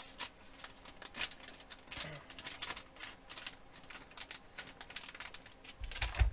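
Clear plastic soft-bait package crinkling and rustling as it is handled, with a run of irregular crackles and clicks.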